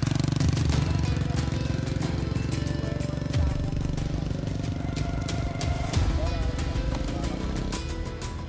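A motorcycle engine running close by as it rides through mud, with people's voices around it, under background music.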